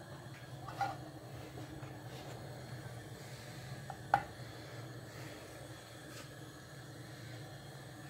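Quiet room tone with a faint steady low hum, broken by a small click just under a second in and a sharper light knock about four seconds in.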